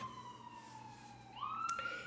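Faint emergency-vehicle siren wailing: one tone sliding slowly downward, then jumping back up about one and a half seconds in and climbing gently again.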